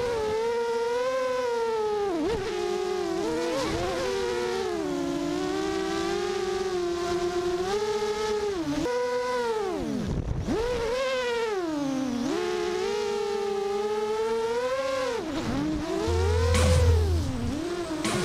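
Sunnysky brushless motors and propellers of an FPV quadcopter whining, the pitch rising and falling continually with throttle and dropping sharply about ten seconds in. Near the end a low hum joins and the sound swells louder.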